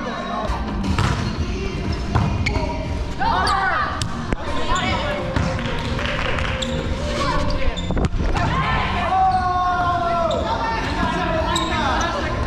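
Indoor volleyball rally: sharp hits of the ball, two of them standing out about four and eight seconds in, over footfalls on the hardwood gym floor, all echoing in a large hall.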